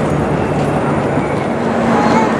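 Steady city street traffic noise, with a low engine hum that steps up in pitch about three quarters of the way through.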